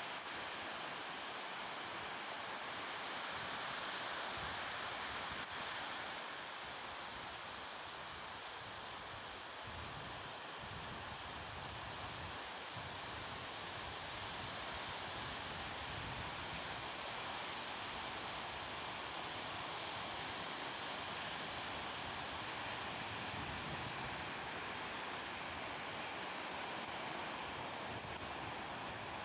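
Small sea waves breaking and washing up onto a sand beach: a steady surf.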